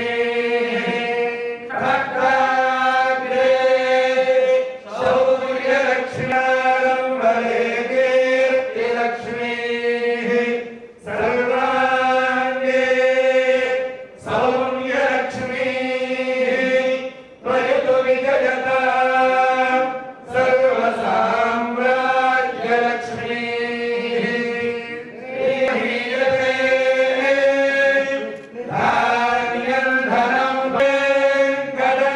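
A group of voices chanting in unison, a Hindu temple chant held on a steady pitch, in phrases of two to four seconds with short pauses for breath between them.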